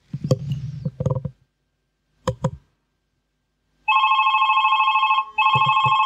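Librem 5 smartphone ringing for an incoming call: a steady ringtone of several held tones that starts about four seconds in and breaks off briefly before going on. A few short low knocks come before it in the first seconds.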